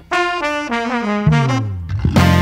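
Horn section of trumpets and trombones on a latin jazz-funk recording, playing a descending phrase in stepped notes after a brief gap, with a lower line sliding down near the end.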